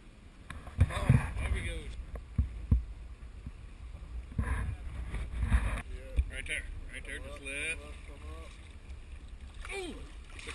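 Wind buffeting the camera microphone, a steady low rumble with a few low thumps in the first three seconds. Indistinct voices come through in the second half.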